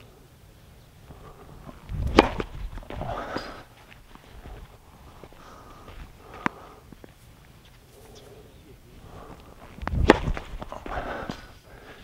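Two tennis serves about eight seconds apart, each a sharp crack of racket strings striking the ball, hit as hybrid slice serves. Each strike is followed by a short spell of movement on the hard court.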